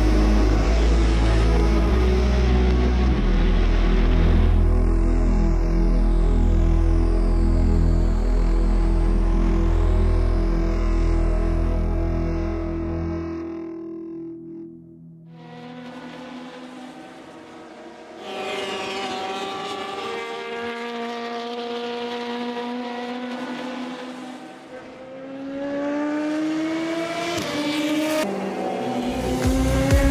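Music with a heavy, sustained bass for the first half. Then an LMP2 prototype's V8 race engine accelerates through the gears: its pitch climbs and drops back at each of several upshifts, with music still underneath.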